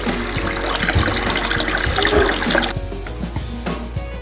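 Tap water running and splashing over hands in a basin, with background music; the water sound stops about two-thirds of the way in, leaving only the music.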